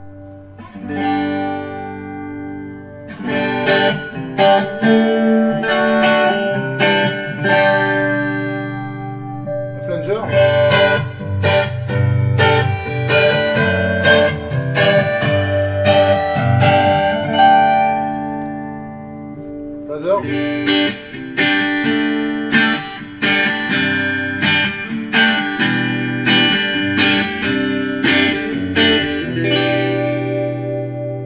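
Clean electric guitar through a Marshall Code 25 modelling amp, playing chords and picked notes in three phrases with short pauses between them. The amp's modulation effects are switched in turn: chorus first, then a jet flanger in the middle phrase, then a phaser near the end.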